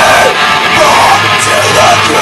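A rock band playing loudly: a singer screaming into a microphone over electric guitars.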